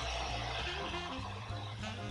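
Handheld hair dryer with a comb nozzle blowing, a steady rushing hiss that stops near the end, over background jazz music.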